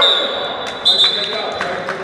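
A referee's whistle blows, then sounds again more strongly just under a second in, over basketballs bouncing on a gym floor.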